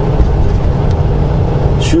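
Semi-truck cab at highway speed: a steady, loud low rumble of engine and road noise.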